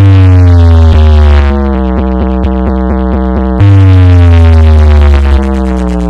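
Bass-heavy electronic dance track played very loud through an NS Music DJ speaker stack during a sound-system test. A heavy bass drop hits at the start and another about three and a half seconds in, each a long low note sliding slowly downward in pitch.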